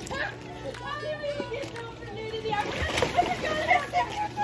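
Water splashing and sloshing in an above-ground swimming pool, growing louder in the second half, with voices over it.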